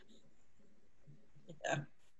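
Quiet room tone over a video-call line, then a single short spoken "yeah" near the end.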